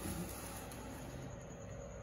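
Faint steady low hum with a soft hiss: room tone, with no distinct event.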